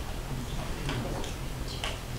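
A few light, scattered clicks over a low, steady room hum.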